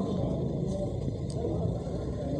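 Outdoor street background: a steady low rumble with indistinct voices.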